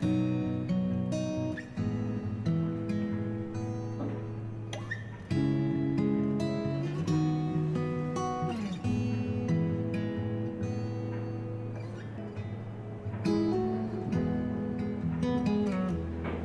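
Background music on acoustic guitar: chords strummed and plucked in a steady, gentle pattern.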